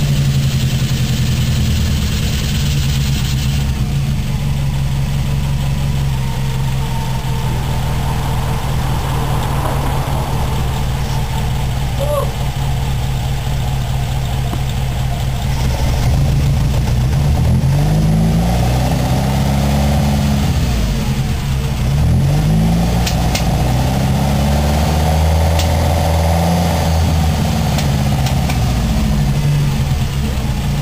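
Mitsubishi Celeste 1.6-litre four-cylinder engine on twin Dellorto twin-barrel carburettors, breathing through an open exhaust with a Remus muffler. It idles steadily, then is revved up and let fall back several times in the second half.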